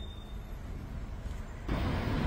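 Road traffic at a busy intersection: a steady hum of vehicle engines and tyres that grows louder near the end.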